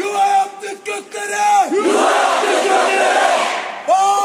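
Call-and-response slogan chanting in Turkish. A man shouts a line, and at about two seconds a large crowd shouts it back in unison; a single shouted voice starts the next line right at the end.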